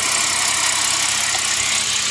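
BMW N52 straight-six engine idling steadily, heard up close in the open engine bay, with a steady high hiss over it.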